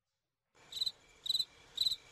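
Cricket-chirp sound effect, the stock 'awkward silence' gag: dead silence for about half a second, then short high chirps evenly spaced at about two a second.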